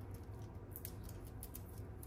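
Faint small ticks and rustles of fingers handling a sheet of foam adhesive dimensionals and pressing them onto a paper die cut, over a low steady hum.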